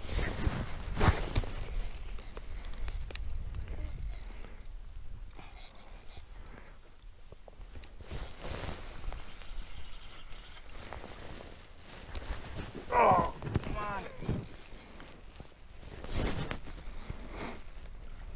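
Irregular crunching and scuffing on snow-covered lake ice, with a brief voice sound about thirteen seconds in.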